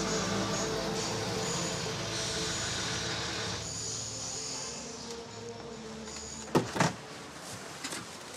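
Steady street and car noise that eases off about halfway through, then two sharp clicks close together near the end, like a car door's handle and latch as the door is opened.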